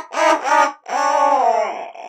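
A person laughing: a short burst of laughter, then one long drawn-out laugh lasting about a second.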